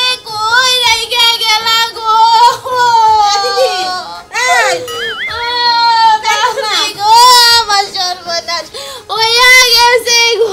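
A woman wailing and sobbing in a high, sing-song lament: long drawn-out cries that waver and fall in pitch, broken by short breaths.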